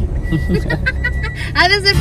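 Laughter from a man and a woman inside a car cabin, louder near the end, over the car's steady low engine and road rumble.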